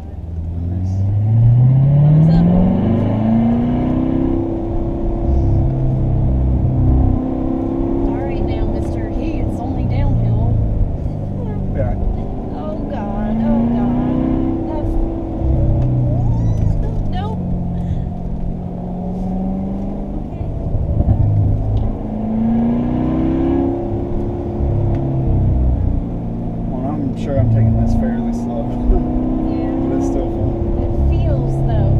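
C7 Corvette Stingray's 6.2-litre V8, heard from inside the cabin, revving up under acceleration and dropping back several times as the car is driven through a run of curves, its pitch climbing steeply in the first few seconds.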